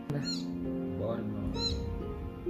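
Newborn kitten, only a few days old with its eyes still closed, giving two thin, high-pitched mews, about a third of a second and about a second and a half in. Background music plays underneath.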